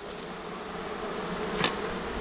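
Carniolan honey bees buzzing steadily over the open top bars of a hive, growing slightly louder: a colony stirred up by having its cover pulled off. A faint click about one and a half seconds in.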